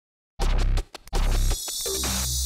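Opening theme music that starts about a third of a second in, with a stuttering, stop-start break just before the one-second mark before it carries on.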